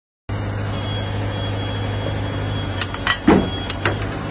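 Steady low hum of a concrete mixer truck's engine running. In the last second a metal bowl and scoop scrape and knock against a bucket of fresh concrete, with one louder dull thump.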